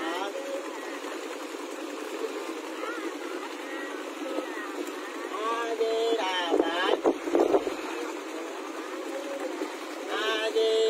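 Motorboat engine running steadily as a long wooden riverboat moves along, with water rushing past the hull. Voices come in about five and a half seconds in, with a cluster of knocks or splashes around seven seconds.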